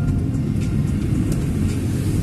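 Steady low rumble of a car driving, heard from inside the cabin: engine and tyre noise on a wet road.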